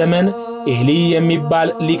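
A man's voice chanting, with steady held tones of a drone beneath it.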